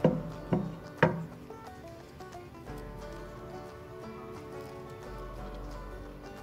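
Background music, with three sharp clicks in the first second as steel pliers squeeze shut the small metal ring on a keyring.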